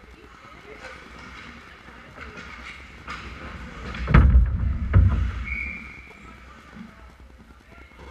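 Two heavy thuds about a second apart near the middle, from contact at the ice hockey goal close to the camera as players scramble in the crease. Faint arena crowd voices and skating noise run underneath.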